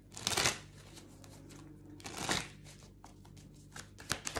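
A deck of oracle cards being shuffled by hand: a short burst of shuffling near the start and another about two seconds in, with light card ticks between.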